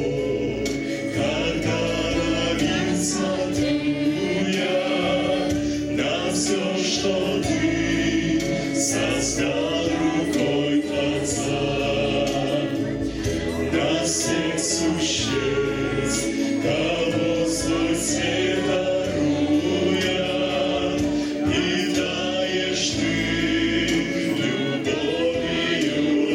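A small mixed vocal ensemble of men and a woman singing a Ukrainian song together through handheld microphones and a PA, without pause.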